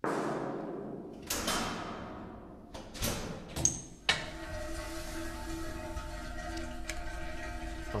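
Binaural dummy-head recording of a sound-effects scene played back: a sudden hit that rings away, a second hit about a second later, a few sharp clicks, then from about four seconds in a steady pitched ringing tone. The hits and ringing include a large can heard off to the left.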